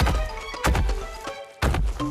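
Three heavy, booming thuds, spaced a little under a second apart, over background music: the stomping footstep sound effect of a big running cartoon dinosaur.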